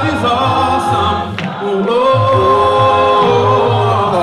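A cappella gospel singing: a male lead singer on a microphone with a group of voices, holding long sustained notes over a steady low rhythmic pulse.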